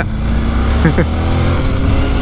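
Honda NC 750X parallel-twin engine running at a steady cruise under the rider, the pitch holding level with no revving.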